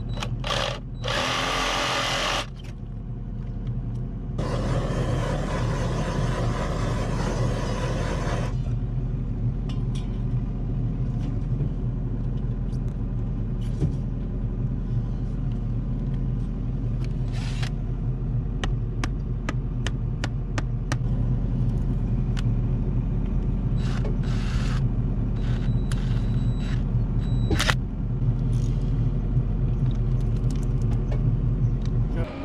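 Reciprocating saw cutting through a buried water line in two bursts, a short one about a second in and a longer one of about four seconds, over a steady low engine drone. Scattered clicks and knocks follow as the cut pipe is handled.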